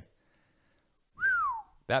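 A man whistles a single short note of amazement about a second in; the note rises and then falls in pitch.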